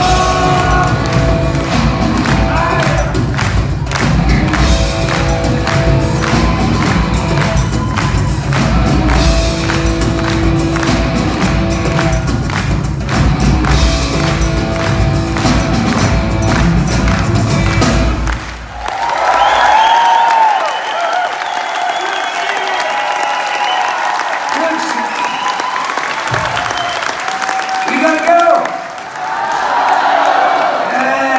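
A live rock band with drums and electric guitars playing through the venue's PA, heard from among the audience. The song stops about two thirds of the way in, and the crowd applauds and cheers.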